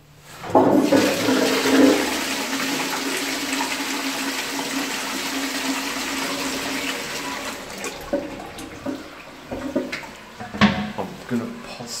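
Low-level Armitage Shanks Compact cistern flushed by its lever into an Armitage Shanks Magnia pan. A sudden rush of water starts about half a second in and runs steadily for about seven seconds, then dies down into a few splashes and knocks near the end.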